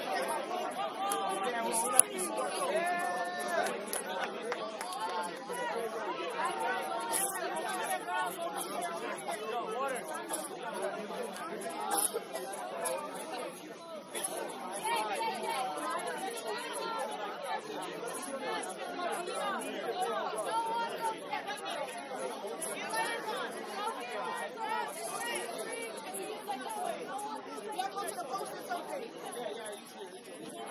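Overlapping chatter of many people talking at once, with a sharp knock about two seconds in.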